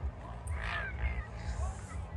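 Outdoor sound of a ski slope recorded on a phone: a steady low rumble with short, high gliding cries of people's voices, the loudest about half a second in.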